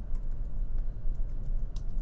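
A few scattered clicks from a computer keyboard over a steady low electrical hum.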